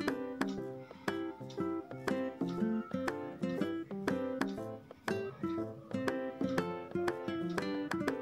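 Background music: a light melody of short plucked-string notes, several a second.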